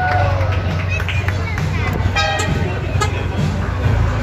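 Ford Mustang idling with a steady low exhaust rumble.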